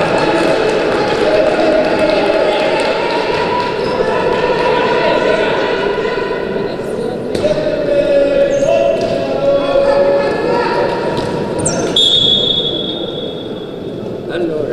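A basketball bouncing on a gym floor during a wheelchair basketball game, with voices calling out in the hall. Near the end a steady high tone sounds for about two seconds.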